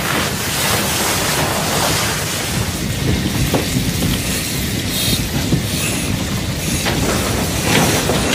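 A large building fire burning with a steady rush and dense crackling.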